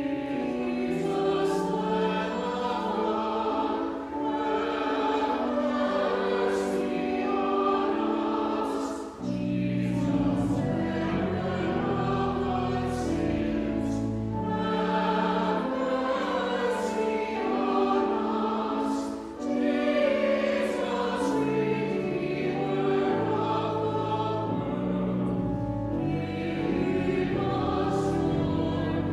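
Church choir singing a slow anthem in parts over sustained organ chords, pausing briefly between phrases.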